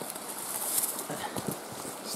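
Quiet footsteps and scuffing on the forest floor over a steady high hiss, with a few soft knocks about a second and a half in.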